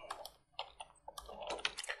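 Computer keyboard keys being tapped in a run of faint, separate keystrokes.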